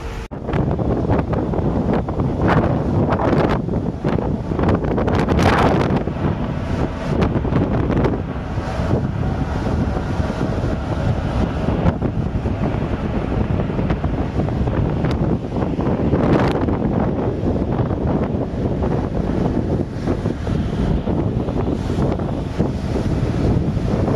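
Wind buffeting the microphone on an open ship's deck at sea, a loud steady rush with several stronger gusts, over the sound of the water and the ship under way.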